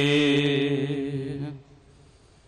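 A man's voice chanting a Sikh devotional verse, holding a long, slightly wavering note at the end of a line. The note fades out about one and a half seconds in.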